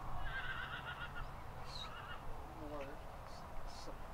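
A horse whinnies once, a high wavering call of about a second just after the start, over a steady low rumble and faint distant voices.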